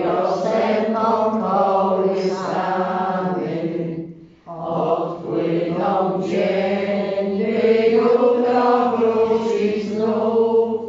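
A church congregation singing together in a slow, chant-like melody, with a short pause for breath about four seconds in before the next line.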